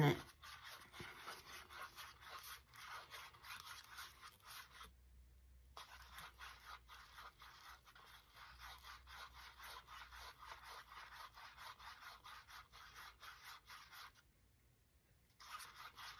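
A stir stick whipping epoxy resin hard in a paper cup, making quick, even scratching strokes, beaten in to work air bubbles into the resin. The stirring breaks off briefly about five seconds in and again near the end.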